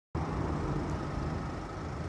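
Steady low hum of a motor vehicle engine, easing off slightly over the two seconds.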